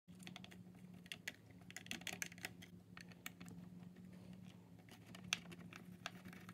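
Faint, irregular small clicks and ticks of a small screwdriver turning out the screws of a Mac mini G4's drive frame, metal bit on screw heads and the metal bracket, with one sharper click about five seconds in.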